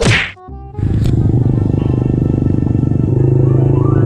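Intro sound effect: a sharp whoosh at the start, a brief gap, then a loud, steady low sound that rises in pitch near the end.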